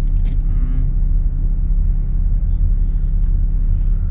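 Car engine running steadily under way, heard from inside the cabin as a low, even drone with road noise.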